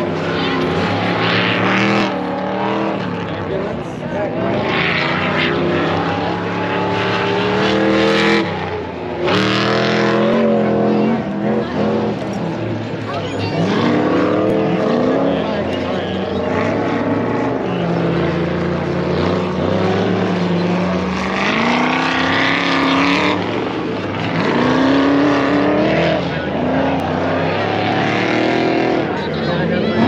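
Off-road race car engines revving hard, their pitch climbing and dropping again and again.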